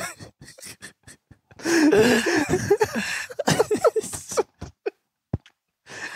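Men laughing in breathy bursts, with short clicks in the first second, falling quiet near the end.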